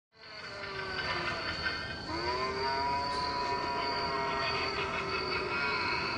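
Eerie, drawn-out ghostly moaning tones, like a Halloween ghost's 'whooo': one voice starts lower and slides up about two seconds in, then holds steady alongside a higher held note.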